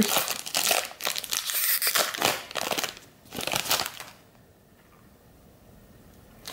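Foil wrapper of a Panini Mosaic basketball card pack being torn open and crinkled by hand, in several bursts over the first four seconds.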